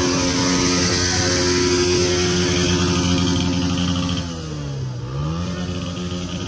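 Small Honda motorcycle engines idling together with a steady hum. About four seconds in, one engine's pitch dips and climbs back up, and the sound gets a little quieter.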